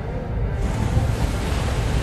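A deep, rushing rumble like heavy surf that swells about half a second in: the film's sound effect of crystal spires bursting up through arctic ice.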